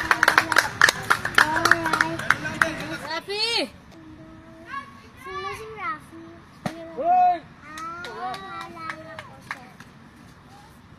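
Fast clapping with children's shouted cheers; the clapping stops about three seconds in, leaving scattered shouts and calls.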